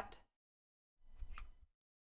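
Scissors snipping through knitting yarn once, a short crisp cut a little over a second in, cutting the yarn tail after a finished cast-off; otherwise near silence.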